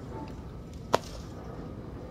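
A single sharp snap about a second in: pliers made for cutting tin and wire cutting through a strand of clothesline wire.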